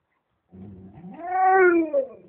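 Golden retriever making a drawn-out "talking" vocalization: a low grumble about half a second in rises into one long, pitched moan-like call, loudest near the end, then falling in pitch. It is the dog's attempt to "say something" back to its owner.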